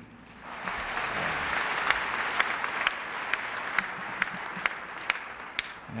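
Audience applause: many people clapping, swelling about half a second in and dying away near the end, with single sharp claps standing out from the mass.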